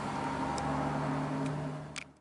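A steady low hum of background noise, with a short click near the end as the sound cuts off.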